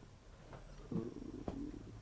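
A man's quiet, low hum in his throat, with a small mouth click about one and a half seconds in.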